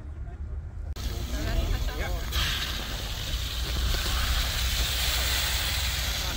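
Fire hose jetting water into a pool inside a ring of sandbags: a steady rushing hiss that grows stronger about two seconds in, with faint voices in the background.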